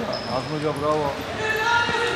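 A man's voice calling out over the dull thuds and footfalls of wrestlers grappling on a padded mat in a large hall. A brief, steady high tone comes in near the end.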